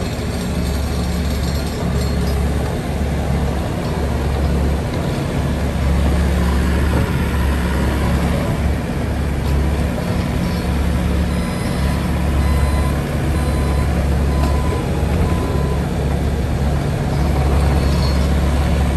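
2018 Bobcat T595 compact track loader's diesel engine running under varying load as the machine drives, turns and lifts its bucket, its low note swelling and easing every second or two.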